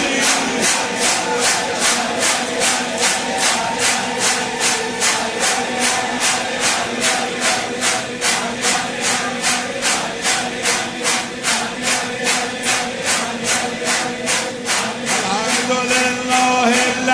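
A crowd chanting an Arabic devotional qasida over a steady beat of rhythmic clapping, about two and a half claps a second.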